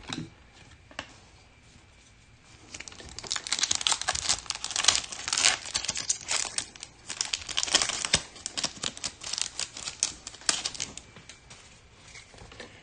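Foil wrapper of a 2021 Select football trading-card pack being torn open and crinkled by hand: a dense run of sharp crackles that starts about three seconds in and goes on for about eight seconds.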